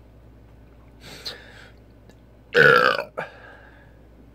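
A man burps loudly about two and a half seconds in, a short, pitched belch that falls slightly, after gulping carbonated malt liquor. A fainter, noisier sound comes about a second in.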